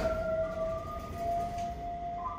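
Hitachi VFI-II lift chime playing a distorted electronic melody: long held, siren-like tones that step slightly in pitch. The garbled sound is the sign of a fault in the chime.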